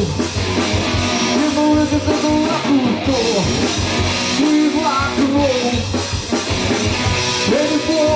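Live rock band playing an instrumental passage: electric guitar lead lines that bend in pitch, over drum kit and bass guitar.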